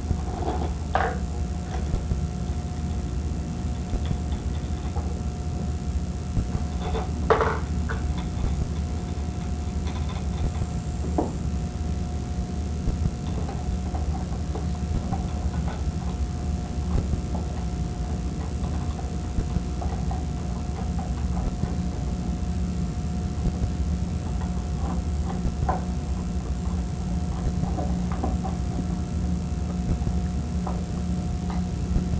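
A steady low hum with a few scattered light clicks and knocks, the loudest about seven seconds in, from a screwdriver and metal motor parts being handled.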